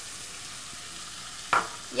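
Layered tilapia and sliced vegetables sizzling steadily in oil in a pot over a lit burner.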